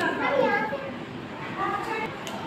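Children's voices: a child speaking in two short stretches, one at the start and one near the end.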